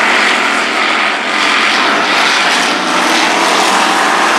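A pack of dirt-track hobby stock race cars at racing speed, their engines merging into one loud, steady drone.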